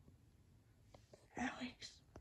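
Mostly quiet, then a short whispered voice of two or three syllables near the end, with a few faint clicks just before it.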